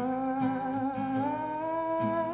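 A woman's voice holding a long wordless note that steps up in pitch about a second in, over an acoustic guitar.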